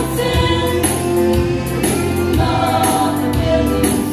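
Women's vocal group singing a gospel song in harmony, with sustained sung notes over instrumental accompaniment with a bass line and a steady beat.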